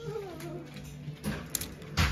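Plastic clothes hangers clicking against each other and the shop rail as garments are pushed along, with a few sharp clacks in the second half, the loudest at the end. Before them comes a short pitched call that falls in pitch.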